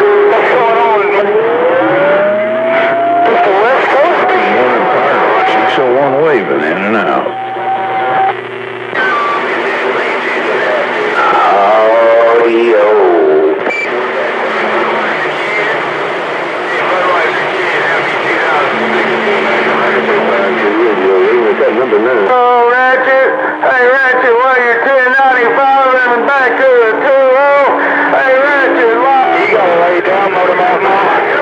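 CB radio speaker receiving distant stations on channel 28: garbled, overlapping voices over radio noise. A whistle rises about a second in and holds steady for several seconds, and the voices warble strongly a little past the middle.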